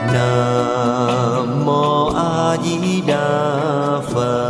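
Buddhist devotional music: a voice sings a slow chant in long, wavering held notes over sustained instrumental backing, with a short pause about two and a half seconds in before the next phrase.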